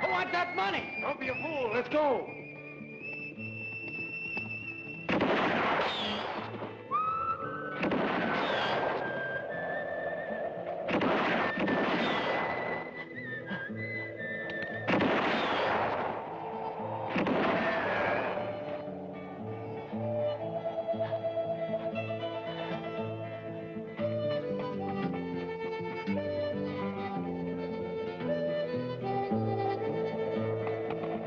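Film score of held musical notes, broken by five gunshots, each ringing out for about a second, spaced two to four seconds apart over the first twenty seconds. The music carries on alone after that.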